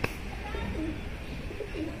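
Domestic pigeons cooing faintly a couple of times, after a sharp click at the very start.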